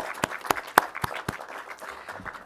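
Audience applauding, with loud, sharp claps from someone close by over the wash of the crowd's clapping; the applause thins out toward the end.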